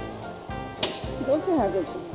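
Background music and a voice, with one sharp clink of cookware just under a second in.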